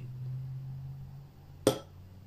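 A ceramic spoon clinks once against a porcelain tea-tasting bowl of wet leaves, a single sharp clink with a short ring near the end.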